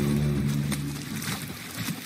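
Held music chords fading out over water splashing in a swimming pool.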